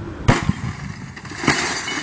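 A wooden caber smashing into an old television set: a sharp crash with a second knock just after, then about a second later a longer crash of breaking and clattering.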